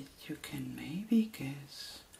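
A woman's soft-spoken voice, a few words in a quiet room.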